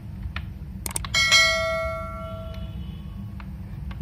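A click, then a bell chime about a second in that rings out and fades over about a second and a half: the sound effect of a subscribe-button animation. A few light laptop key clicks and a steady low hum run underneath.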